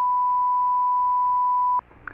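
Broadcast line-up test tone: one steady pure tone that cuts off suddenly near the end.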